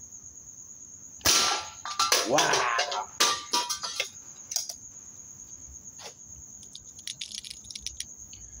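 A single rifle shot about a second in, fired at cans and bottles on a ledge, followed by a few sharper knocks and small clicks of the target being hit and falling. Crickets chirp steadily in a high tone throughout.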